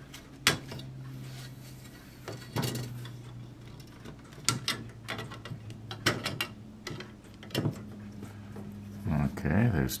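Hobby sprue cutters snipping parts off a plastic model-kit sprue: a string of sharp clicks a second or two apart, over a low steady hum.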